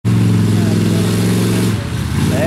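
A vehicle engine running steadily at one pitch, dropping away shortly before the end.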